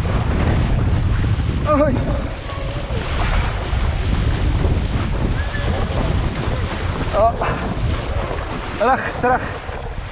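Wind buffeting the microphone and water rushing and splashing under a windsurf board sailing fast across choppy water, a steady, heavy rumble and hiss.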